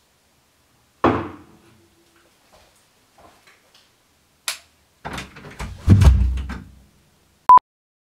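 A door banging shut about a second in, ringing briefly. Then come a few light knocks and a click, a louder run of knocks and low thuds midway, and a short, pure, high beep near the end.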